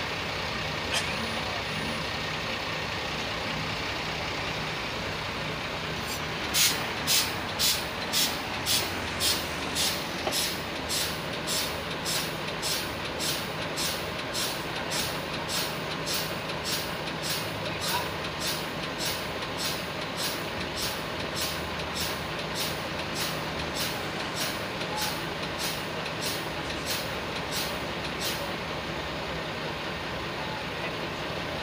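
Steady vehicle engine noise in the background. About six seconds in, a regular train of sharp, hissy clicks starts at about two a second. It is loudest at first, fades gradually and stops shortly before the end.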